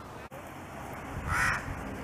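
A crow gives a single short caw about a second and a half in.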